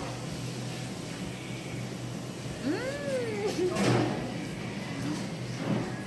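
A person's brief whimpering sound made with the mouth full, rising and then falling in pitch, about halfway through, followed by a short burst of noise, over steady restaurant background noise.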